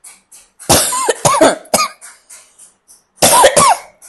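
An elderly woman coughing in two bouts: a run of several coughs about a second in, and a shorter run near the end.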